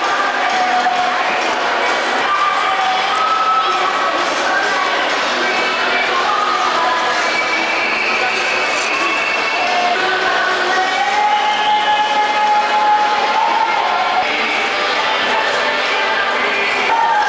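Steady din of many voices from a crowd of skaters at an ice rink, chattering and calling out over one another.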